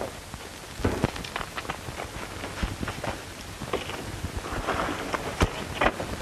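Horses' hooves thudding and clattering irregularly as a group of mounted riders comes up at pace, over a steady hiss.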